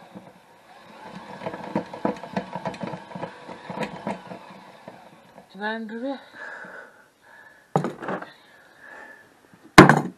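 Washing-machine drum and pulley being turned by hand with a bent metal crank, giving a fast clicking rattle for the first few seconds. Two sharp knocks come later, the louder one near the end.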